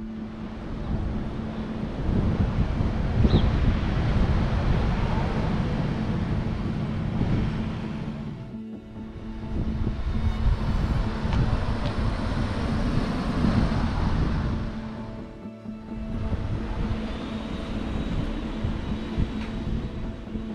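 Soft background music with a steady held tone over outdoor street ambience: rumbling wind on the microphone and a passing car. The ambience drops out briefly about nine seconds in and again about fifteen seconds in.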